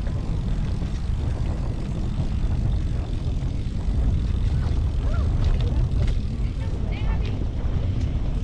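Steady low rumble of wind buffeting the microphone of a camera moving along a paved path, with faint voices heard briefly as it passes a group of people.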